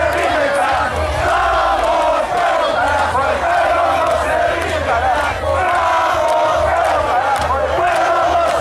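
A large crowd of protesters shouting and chanting together, loud and without a break.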